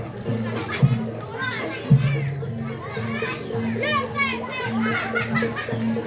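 Gamelan accompaniment of a Javanese barongan procession: heavy drum strikes about a second apart in the first two seconds, then a pitched note repeated in a steady beat. Children shout and chatter loudly over it.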